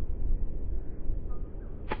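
Golf club striking the ball on a short chip shot near the end: a sharp click, followed quickly by a second, softer click. Wind rumble on the microphone runs underneath.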